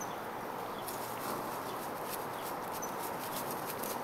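A dog gnawing and crunching on a T-bone steak: irregular short clicks over a steady background hiss.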